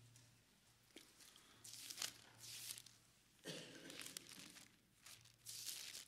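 Faint paper rustling, a few soft bursts from about two seconds in: the pages of a Bible being leafed through to find a chapter.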